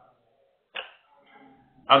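A single brief, sharp sound just under a second in, then a man starts speaking near the end.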